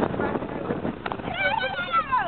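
A girl's high-pitched, wavering voice cry over chatter and bus noise, starting just past halfway and sliding down in pitch at the end.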